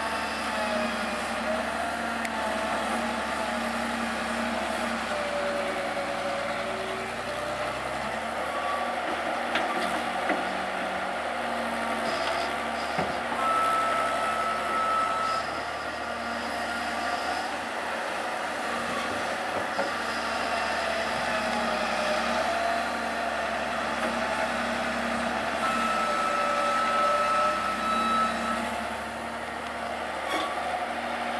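Tatra 815 UDS-114 telescopic excavator working: its engine and hydraulics run under changing load as it digs and swings a bucket of soil, with a whine that rises and falls in pitch. Twice, about halfway through and again near the end, a steady higher whine holds for two or three seconds.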